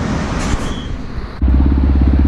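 Cars passing on a city road, a steady rush of traffic noise. About one and a half seconds in, the sound cuts suddenly to a motorcycle engine running close by, a steady low hum with a fast even pulse.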